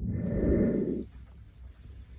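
A loud burst of low rumbling noise lasting about a second, then a much quieter steady hiss.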